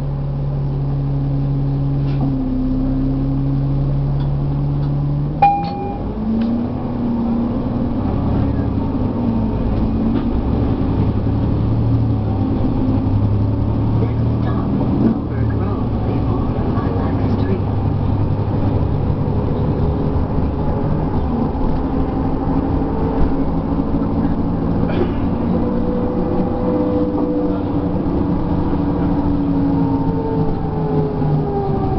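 Cummins ISL9 diesel engine of a 2012 Nova Bus LFS articulated bus, heard from inside the bus. It idles steadily at first. After a sharp click and a short tone about five seconds in, it pulls away, its note rising and stepping through the ZF automatic's gear changes as the bus gathers speed.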